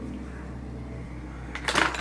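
A low steady hum with little else over it, then a woman's voice starts near the end.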